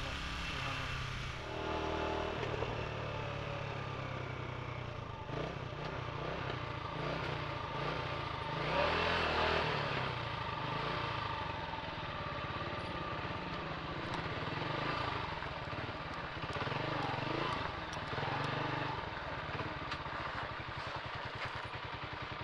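Motorcycle engine running steadily on the move, its pitch shifting several times as the revs change, with a louder rush of noise about nine seconds in.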